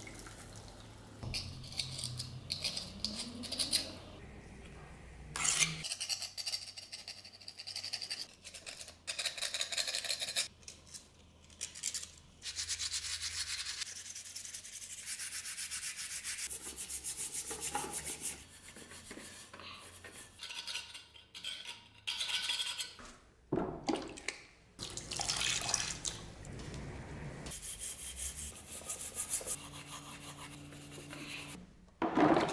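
Water poured into a plastic bucket near the start, with a rising tone as it fills. Then repeated scrubbing and rubbing of cast-iron vise parts by gloved hands in the bucket of water, with wet sloshing and splashing, in several short, abruptly cut stretches.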